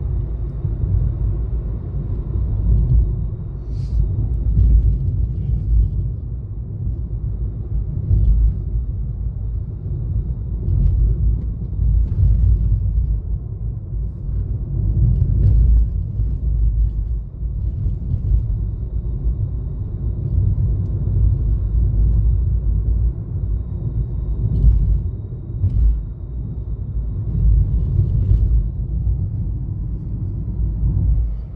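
Steady low rumble of a moving car heard from inside the cabin: road and engine noise, swelling and easing slightly, with a few faint ticks.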